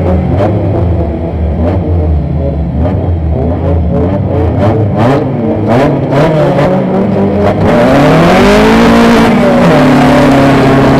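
Honda Civic autocross car's engine idling and blipped at the start, with scattered sharp knocks and rattles. About eight seconds in it revs hard as the car launches onto the dirt, with a loud rush of tyre and gravel noise. The engine pitch climbs, then drops back near the end.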